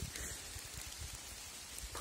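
Faint, irregular rustling and crackling of footsteps in dead leaf litter on a forest floor, with one brief louder rustle about a quarter second in.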